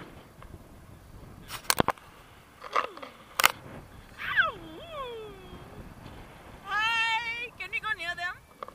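A woman's high-pitched voice whooping: one call sliding steeply down in pitch about halfway through, then a long, high, held cry near the end. A few sharp clicks come before the calls.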